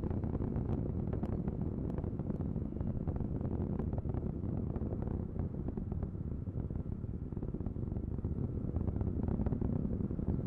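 Distant rumble of the Ares I-X solid rocket booster in flight, a steady low roar with faint crackling running through it.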